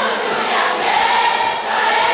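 Concert audience singing along, many voices together over the backing music.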